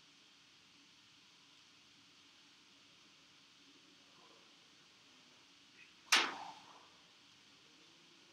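Quiet room tone, broken about six seconds in by a single sharp knock that dies away within half a second.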